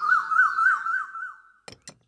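A high warbling tone rising and falling about four times a second, stopping shortly before two short clicks near the end.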